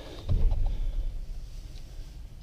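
A low thump about a third of a second in, then quieter low rumbling and handling noise as someone climbs up out of a boat's engine compartment.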